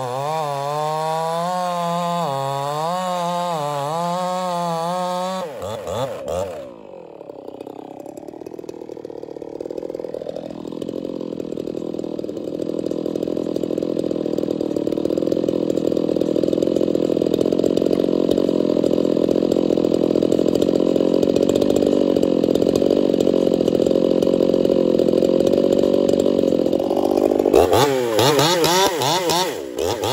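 Brisco-built Echo CS-4910 two-stroke chainsaw cutting through a log under load, its pitch wavering as the chain bites. About six seconds in it breaks off into a lower, steadier run for some twenty seconds. Near the end it revs back into the wood.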